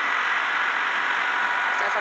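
Delivery truck's engine idling: a steady, even noise with a few faint steady whining tones.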